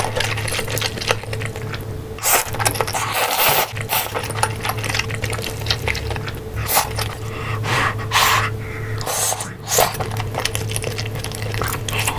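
Close-miked eating: chewing, slurping and wet mouth sounds, with scattered clicks and scrapes of chopsticks and a spoon against the dishes. A steady low electrical hum runs underneath.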